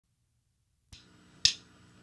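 Count-in before a rock song: sharp clicks at a steady spacing, a faint one just under a second in and a louder one about half a second later.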